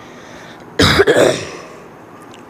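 A boy clearing his throat close to a clip-on microphone: one loud, abrupt burst about a second in, in two quick parts, lasting about half a second.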